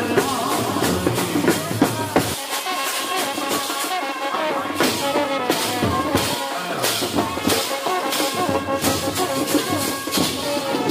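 Brass band playing in the street: trumpet melody over drums and percussion.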